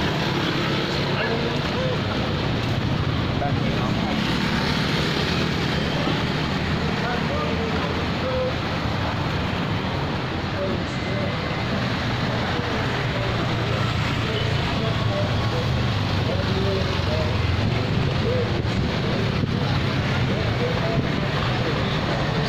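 Steady street traffic noise from passing cars and motorbikes, with indistinct voices of people nearby.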